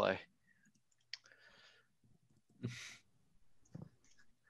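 Quiet video-call audio with a sharp click about a second in, a short breathy sound near the three-second mark and a few faint ticks near the end.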